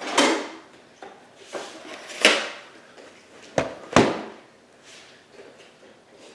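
A VHS cassette being handled and loaded into a VCR: a few sharp plastic clicks and clunks, two of them close together about three and a half to four seconds in, with light handling rustle between.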